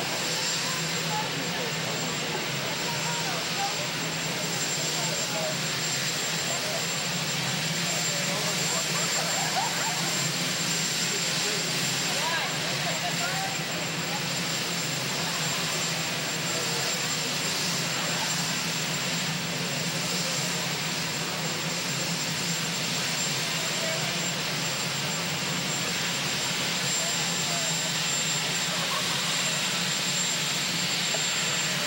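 Helicopter turbine engines running steadily: an even, unchanging engine noise with no build-up or let-down, under faint, indistinct voices.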